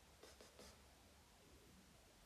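Near silence: room tone with a low hum, broken by a few faint, brief scratchy rustles in the first half.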